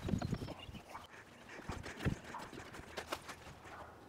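Footsteps on wooden stairs, an irregular run of knocks, loudest in the first half-second and then fainter as they move away.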